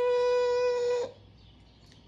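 A single steady electronic beep, one unwavering note with a bright edge, that cuts off about a second in.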